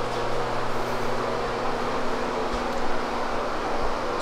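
A steady low hum with an even airy hiss from room ventilation, sounding in a small tiled bathroom.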